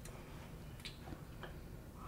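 Quiet room tone with a few faint, light clicks at irregular intervals, the first a little under a second in.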